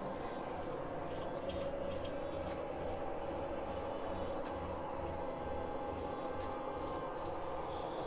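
Layered experimental electronic drone music with an industrial, noisy character: a dense, steady wash with a held mid tone and a low throb pulsing about twice a second.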